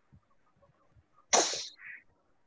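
A person sneezing once: a sudden loud burst about a second and a half in, followed by a shorter, softer sound just after.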